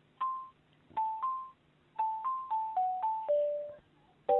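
Telephone hold music heard over the phone line: a simple tune of single struck notes, each fading away, played in short phrases with brief gaps between them.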